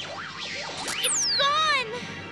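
Cartoon score with sound effects: a high whistle falls steeply in pitch about a second in, then a wobbling, warbling tone follows and stops just before the end.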